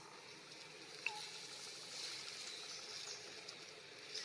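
Faint outdoor background with light rustling and ticking of dry leaf litter, and one short high squeak sliding down in pitch about a second in.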